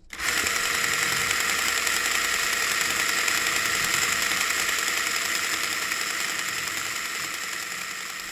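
A steady mechanical whirring and clattering sound effect that cuts in suddenly and fades slowly over about eight seconds, played as the sting that opens a podcast segment.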